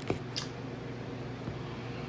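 Room tone with a steady low hum, and a couple of brief soft clicks near the start.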